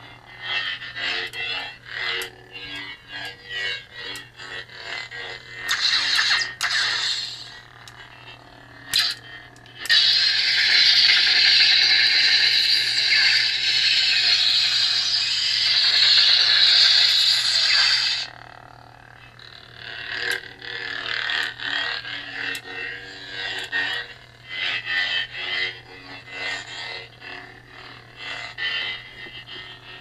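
Lightsaber sound font played through the hilt's speaker: a steady low hum with smoothswing swing sounds that change as the hilt is turned. From about ten seconds in, a loud harsh noise lasts about eight seconds, then stops.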